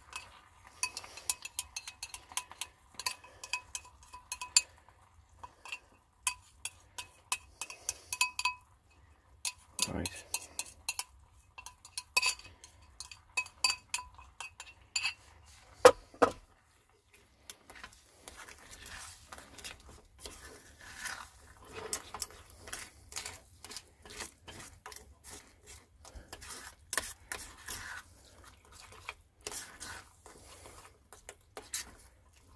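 Metal spoon clinking and scraping against a plastic tub and a stainless steel saucepan, many sharp clinks with a ringing note, and two louder knocks about ten and sixteen seconds in. Then the spoon stirs rice in the pan, a denser run of scrapes.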